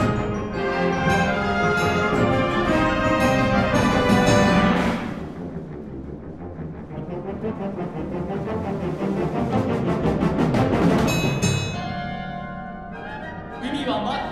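Concert wind band playing loud sustained brass and woodwind chords. About five seconds in the full band drops away to a low percussion roll that swells for several seconds and stops suddenly, leaving quieter held chords.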